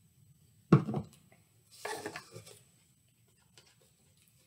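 A plastic paint bottle set down on a wooden table with a sharp knock a little under a second in, followed about a second later by a softer clatter as a paintbrush is picked up and dabbed into paint on a plastic lid.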